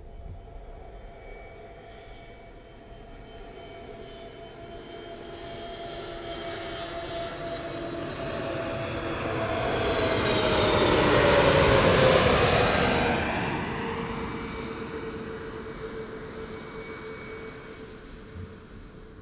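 Airbus A321 jetliner on final approach passing close overhead: the jet engines' whine and rush grow steadily louder, peak about two-thirds of the way through, then fade, and their tones drop in pitch as the aircraft passes.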